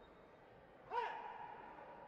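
A taekwondo competitor's kihap: one loud shout about a second in that rises and falls in pitch, then trails off.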